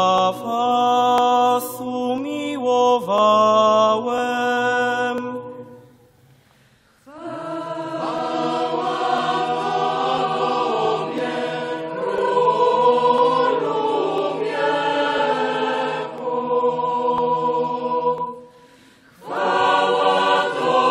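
Church chant of the Lenten Gospel acclamation. A lone voice finishes singing the verse, then after a brief pause the congregation sings the response together. The response ends just before the end and starts again near it.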